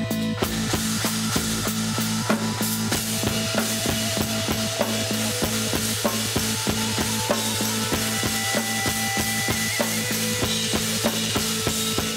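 Heavy instrumental rock with a Brady drum kit played in a steady, driving beat and a wash of cymbals over a sustained low drone of bass and guitar.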